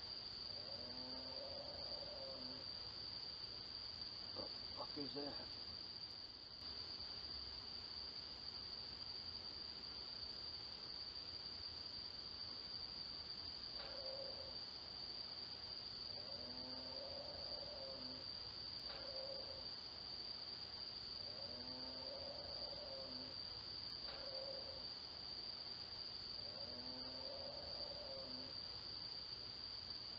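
Faint, unidentified animal calls: short pitched calls with several overtones that rise and fall, coming in clusters early on and again from about 14 to 28 seconds in, which the owner says are not a dog and did not sound like a coyote. Crickets chirp steadily behind them, picked up by a doorbell camera's microphone.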